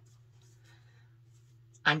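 Quiet room tone with a faint steady low hum and a faint soft noise; a woman starts speaking near the end.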